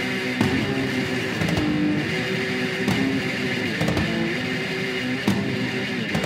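Heavy metal recording: a distorted electric guitar riff with bass and drum hits, with no vocals.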